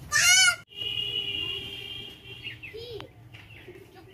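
A goat bleats once, short and loud, at the very start, with a wavering, arching pitch. A steady high tone follows for about a second and a half, with a fainter call and a click near the three-second mark.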